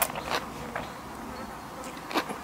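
Close-up eating sounds: a mouthful of rice noodles and salad slurped and chewed, with a couple of sharp wet smacks in the first half second, then quieter chewing.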